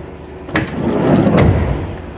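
A Ram ProMaster City's sliding side cargo door being pulled shut: a click as it starts moving, a rumble as it runs along its track, and a sharp thud as it latches about a second and a half in.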